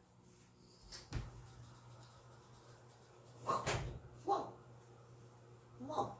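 An oven door is pulled open with a single clunk about a second in, and a faint low hum follows. Then come a few short, sharp exhaled puffs of breath, one of them a "whew".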